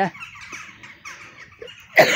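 Faint, scattered calls of a flock of crows.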